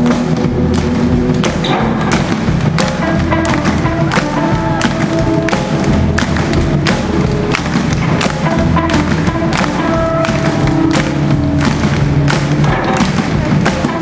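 Live rockabilly band playing rock and roll: slapped upright double bass, hollow-body electric guitar and drum kit, with a steady beat of sharp thumps.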